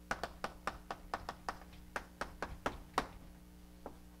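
Chalk tapping and scratching on a blackboard as a formula is written: a quick, irregular run of sharp taps, several a second, thinning out near the end.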